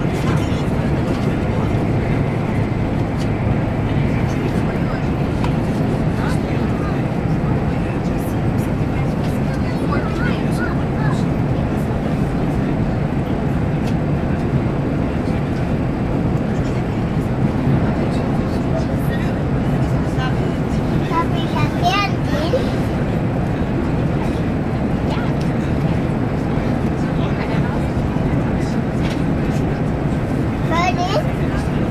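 Steady rumble of an electric train running at speed, heard from inside the passenger car. Faint voices come through about ten seconds in and again past twenty seconds.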